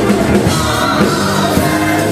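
Live gospel praise music: a man sings lead into a microphone while playing a Roland Fantom G6 synthesizer keyboard, with fuller voices and a steady beat behind him.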